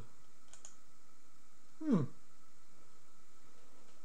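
Two quick computer mouse clicks about half a second in, triggering a logic-analyser capture, over a faint steady background with thin electronic tones.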